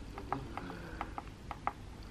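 Keypad of a Covidien enteral feeding pump: a quick run of about six faint, short clicks as a button is pressed again and again to step the feed volume up.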